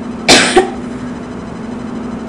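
A woman coughs into her hand, one short loud cough in two quick bursts about a third of a second in, over a steady low hum.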